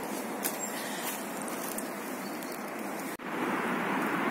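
Steady outdoor background hiss with a few faint rustles; it drops out for an instant a little past three seconds and comes back slightly louder.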